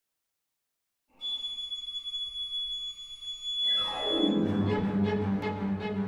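Orchestral music. After about a second of silence, high sustained tones come in. Midway a falling glide leads into louder music with a steady pulse of repeated strokes, about three a second.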